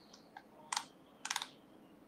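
A few clicks of computer keys: a faint tap, a louder click, then a quick run of about four keystrokes.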